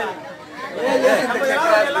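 Speech only: several people talking over one another, with a short lull just after the start.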